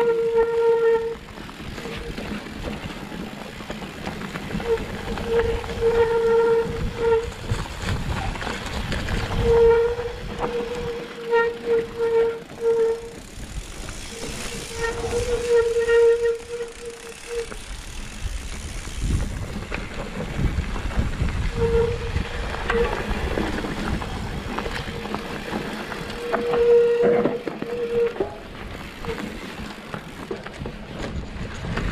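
Mountain bike rear freewheel hub buzzing in stretches of one to three seconds as the rider coasts, stopping between, over the rumble of knobby tyres on a dirt trail and wind on the microphone.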